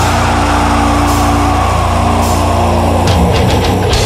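Death metal recording: heavily distorted guitars holding low sustained notes under a dense, loud wall of sound, with a few sharp crashes.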